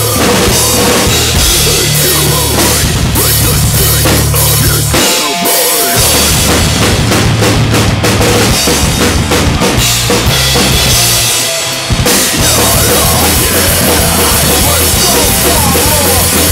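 Acoustic drum kit played along to a rock song: kick drum, snare and cymbals driving over the recorded track's bass and guitars. The low end drops out briefly about five seconds in and again just before twelve seconds, where the song breaks.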